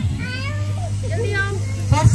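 High-pitched children's voices calling and chattering over a steady low hum.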